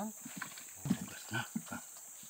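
A man's short laugh and brief voice sounds over a steady high-pitched insect drone.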